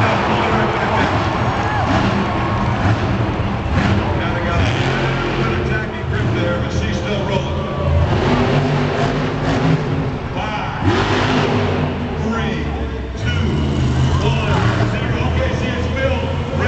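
Monster truck's engine running and revving up and down as the truck drives across the arena dirt, over crowd noise and a loudspeaker voice.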